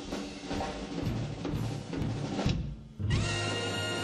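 A big band playing swing: drum-kit hits for the first two and a half seconds, a brief break, then the full band comes in on a long held chord about three seconds in.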